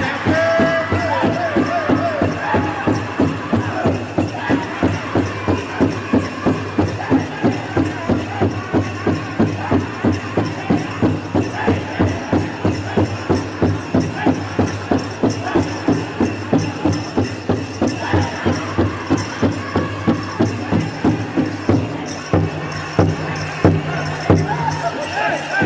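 Powwow drum group singing over a steady, even beat on the big drum, with dancers' bells jingling.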